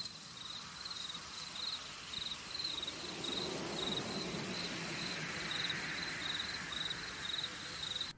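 Ambient intro soundtrack of cricket chirping, an even high chirp about three times a second over a soft hiss, with a gentle wash swelling through the middle. It cuts off abruptly at the end.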